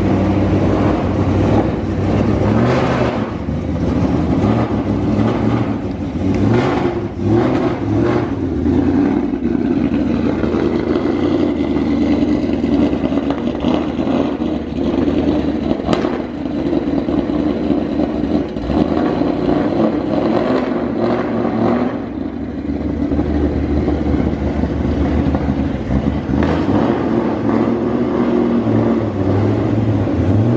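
Shelby GT500 Mustang's supercharged V8 running as the car is driven slowly around a lot. The engine note rises and falls with light throttle several times.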